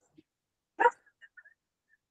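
A dog barks once, briefly, just under a second in.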